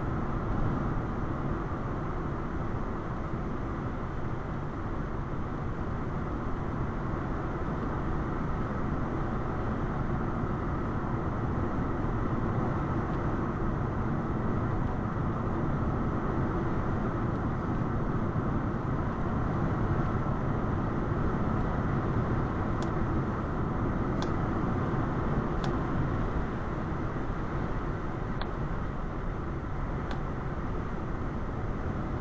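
Steady road noise of a car cruising at about 60 mph, heard from inside the cabin: low tyre and engine hum with little change. A few faint short clicks come near the end.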